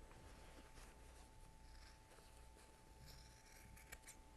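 Near silence: a faint steady room hum, with a few faint snips of scissors trimming the thick quilted fabric.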